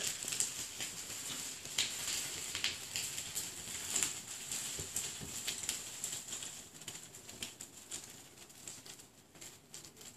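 Light irregular clicks and rattles of a child's small bicycle rolling over concrete, fading as it moves away.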